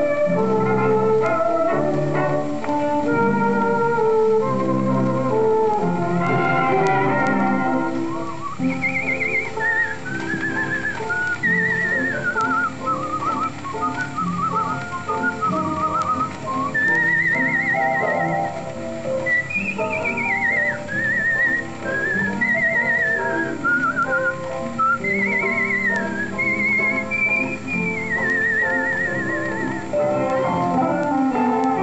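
A late-1920s dance band plays a waltz on a 78 rpm record. About eight seconds in, a whistled melody with a quick vibrato comes in and carries the tune above the band.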